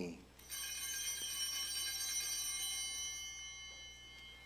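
Altar bells rung at the elevation of the host: a bright cluster of high ringing tones starts about half a second in and fades slowly.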